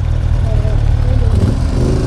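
Motorcycle engines idling steadily at a standstill: the Suzuki Bandit's inline-four under the camera, with a Moto Guzzi V-twin running alongside.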